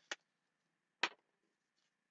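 Small craft scissors snipping cardstock: two short, crisp snips, one right at the start and one about a second in.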